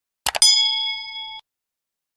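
Subscribe-button animation sound effect: two quick mouse clicks, then a notification bell ding that rings for about a second and cuts off suddenly.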